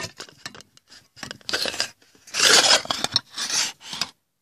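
Irregular scraping and rubbing close to the microphone, in a few loud bursts: handling noise as a hand and fingers move right against the phone.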